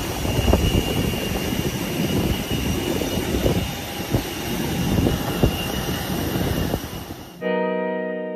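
Steady roar of aircraft noise on an airport apron with a high, even whine running through it and a few knocks. It cuts off suddenly near the end, when guitar music starts.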